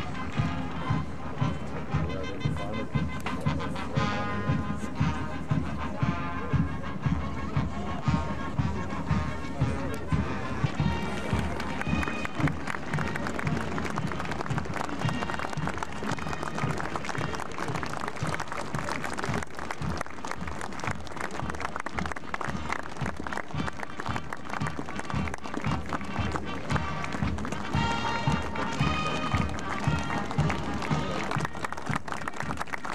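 Military marching band playing a march: wind instruments over a steady, regular drum beat.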